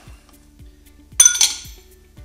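A small glass bowl clinks once against a hard surface about a second in, a sharp glassy tap with a short ringing tail. Faint background music underneath.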